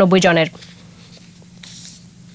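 A woman's newsreading voice ends a phrase about half a second in, then a pause with only a faint steady low hum and a soft hiss near the end.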